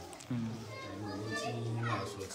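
Speech: a man talking.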